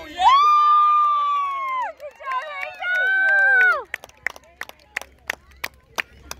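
A spectator cheering a goal: two long, held, high-pitched yells, the second pitched higher, each falling off at its end, followed by hand clapping at about three claps a second.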